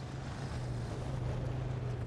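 A steady rushing noise, like wind, over a low steady hum.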